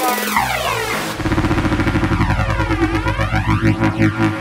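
Hard electronic techno from a DJ mix: a sweeping synth effect, then a fast pulsing bassline comes in about a second in.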